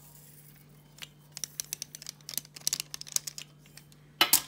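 A teaspoon of salt is tipped from a plastic measuring spoon onto raw potato chunks in a pot. From about a second in, it gives rapid, irregular light clicks and crackles that stop near the end.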